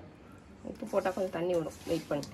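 A voice speaking quietly, starting less than a second in.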